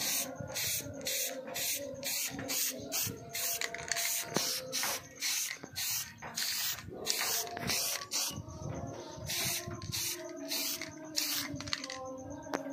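Aerosol spray can spraying the wooden sheath of a badik, hissing in short rapid bursts, two or three a second.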